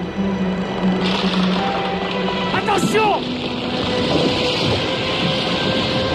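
Film soundtrack: music over a steady rushing noise that sets in about a second in, with a brief gliding cry about three seconds in.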